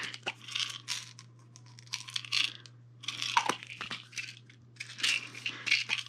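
Plastic pill bottles being handled: tablets rattling and caps clicking in short bursts, with a couple of sharp clicks about halfway through.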